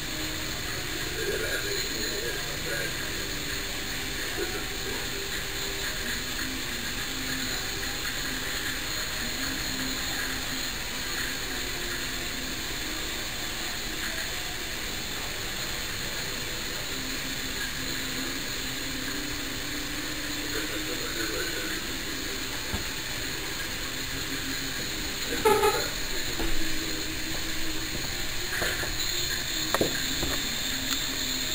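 Steady outdoor background hiss with faint, indistinct voices in the distance, and a few short knocks near the end.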